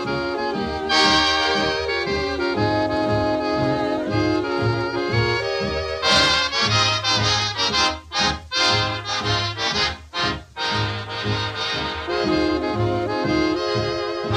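A 1939 swing dance orchestra plays an instrumental fox-trot passage off a 78 rpm record, with sustained band chords over a steady bass beat. A run of short, clipped chords comes a little past the middle.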